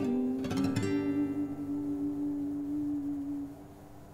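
The ending of a song: a last strummed guitar chord a little under a second in rings on and fades away.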